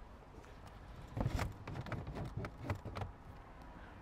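Footsteps on a tarmac road: a few irregular shoe scuffs and taps over a couple of seconds.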